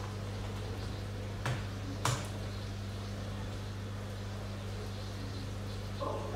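Two short clicks about half a second apart as an aquarium heater's power plug is pushed into a socket, over a steady low electrical hum.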